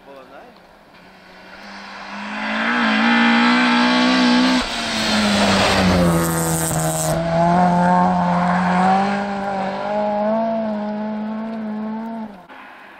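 A rally car approaches at full power on a snowy stage, with a short break in the engine note about four and a half seconds in. It passes close by with a burst of hiss, and the engine note drops in pitch and fades as the car drives away.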